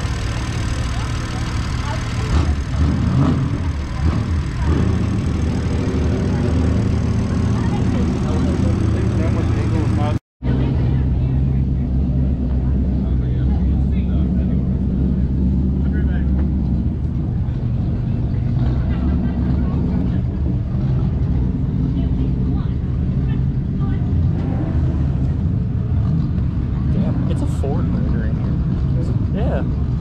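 An engine running steadily at idle, a low drone, with people's voices in the background. The sound drops out for a moment about ten seconds in.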